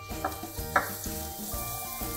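Pressed garlic sizzling in melted butter and sunflower oil in a hot frying pan, stirred with a wooden spoon. This is the garlic browning for a few seconds to release its aroma.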